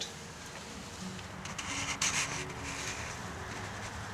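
Faint rustling and rubbing with a few soft scrapes, handling noise as the camera is carried, over a faint steady hum.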